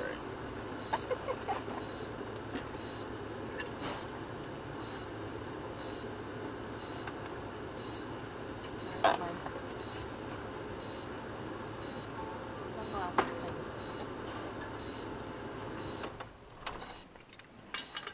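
A stationary vehicle's engine idling steadily, with a few sharp knocks. The engine cuts off about sixteen seconds in.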